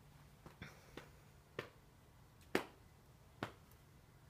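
A handful of sharp, irregular clicks or taps, about six in four seconds, the loudest a little past halfway, over a faint steady low hum.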